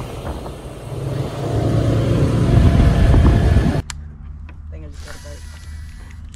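Road and wind noise from a moving car, a dense rumble that grows louder over the first few seconds. It cuts off abruptly about four seconds in, leaving a much quieter steady low hum.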